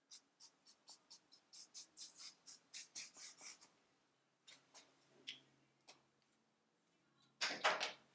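Felt-tip marker writing on flip-chart paper on an easel: a quick run of short strokes over the first few seconds, a few more after a pause, then a louder sound near the end.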